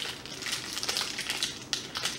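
A twist-wrapped chocolate's wrapper crinkling as it is unwrapped by hand: a run of irregular small crackles.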